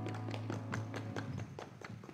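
The last held note of a song on guitar and keyboard dying away while a small congregation starts clapping: scattered, uneven hand claps rather than a full ovation.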